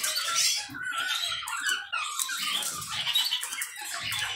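Small cage birds twittering, a continuous run of rapid high chirps and warbling notes.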